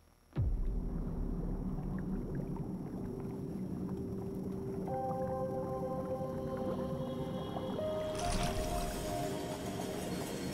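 Film-trailer soundtrack: a deep, steady rumble begins just after the start, with held musical notes entering about halfway through and a brighter swell near the end.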